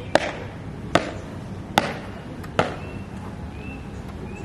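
Marching footsteps stamped down on a paved courtyard: four sharp steps a little under a second apart, the last about two and a half seconds in.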